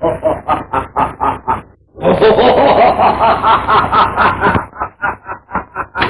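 A man laughing, a long run of quick ha-ha-ha pulses at about five a second. It grows loudest and most continuous in the middle, then trails off into separate chuckles near the end.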